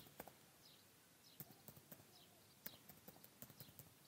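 Faint keystrokes on a computer keyboard: a dozen or so short clicks at irregular spacing as a word is typed.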